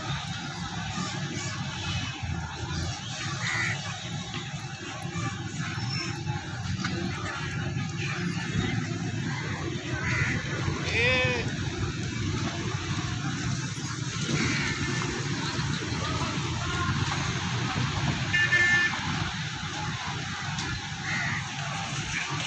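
Street traffic heard from a slow-moving vehicle: a steady low engine and road rumble, with short horn toots now and then and some voices.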